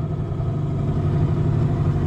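Two-stroke Yamaha outboard motor on a small aluminium tinny running steadily.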